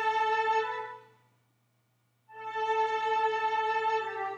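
Software string-section instrument playing alone: one long held chord that fades out about a second in, a moment of silence, then another held chord that moves to lower notes near the end.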